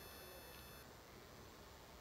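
Near silence: faint room hiss, with a faint high whine that stops a little under a second in.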